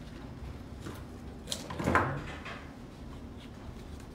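A brief knock and rustle about halfway through as stems are worked into the flower arrangement, over a steady low background hum.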